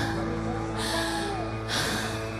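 A quiet stretch of a live rock band: held electric guitar and bass notes ring on while the singer breathes hard into the microphone, a sharp breath about once a second.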